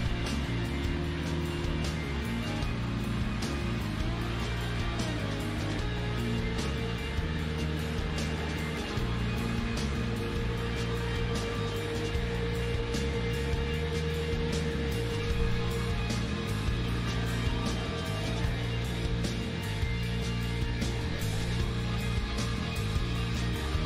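Live rock band playing: a steady drum beat with cymbals under guitars and keyboards. A single high note is held for several seconds through the middle.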